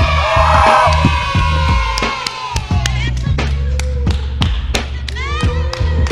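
A hip-hop beat plays with a heavy bass line. Over it, a long shouted cry falls away in the first two seconds, and another shout rises near the end.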